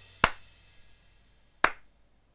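Two sharp, isolated snaps about a second and a half apart, each with a brief ring, over near silence: a sparse comic sound effect after a joke falls flat.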